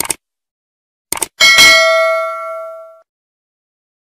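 Subscribe-button animation sound effect: a quick double mouse click, another pair of clicks about a second later, then a bright notification-bell ding that rings out and fades over about a second and a half.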